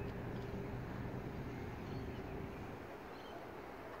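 Faint, distant diesel locomotive engine, a steady low drone that eases off about two and a half seconds in.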